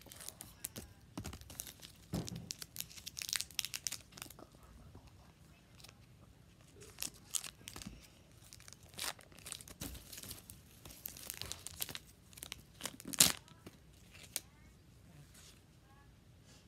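Foil wrapper of a Pokémon booster pack crinkling and tearing open in irregular bursts, with one sharp crackle a little after thirteen seconds that is the loudest moment.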